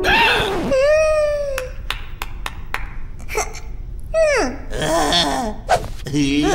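Wordless cartoon-character vocalizations: a startled exclamation followed by a long held, slightly falling "ooh", then more sliding, falling vocal sounds. A quick run of short clicks falls between them.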